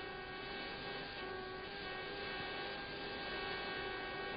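Steady electrical hum with hiss on a cockpit radio recording, heard in the gap between transmissions. The hum is one unchanging tone with its overtones.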